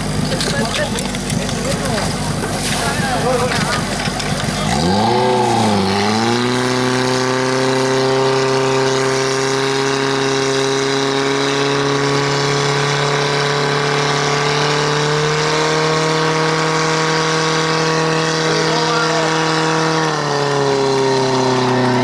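Portable fire pump engine running; about five seconds in it is opened up hard, dips briefly, then holds a high steady pitch as it drives water out through the hoses, stepping up slightly partway through and dropping back near the end. People shout in the first few seconds.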